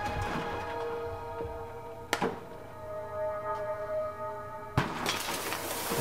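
Steel paint can buckling inward in ice water, with two sharp metallic cracks about two seconds in and again near five seconds. The steam inside is condensing, leaving a vacuum, and outside air pressure is crushing the can. Steady background music plays throughout.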